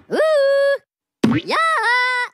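Two drawn-out, high-pitched cartoon Minion voice cries, separated by a short gap. The first rises, then holds steady. The second wavers, dips and comes back up.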